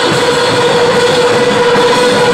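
A live garage-rock band playing loud, with a distorted electric guitar holding one steady, sustained tone, like feedback, over a dense wash of amplified noise.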